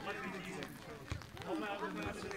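Indistinct voices talking nearby, with a short low knock about a second in.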